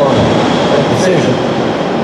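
Steady, loud background rumble of room noise, with a faint, indistinct voice in it.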